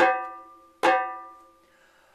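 Two open-tone hand strokes on a 12-inch fiberglass djembe with a fleece-covered synthetic head, one right at the start and another just under a second later. Each rings with a clear pitch and dies away within about a second.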